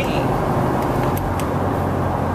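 Steady engine and road noise inside a cargo van's cabin as it drives along, mostly a low, even drone.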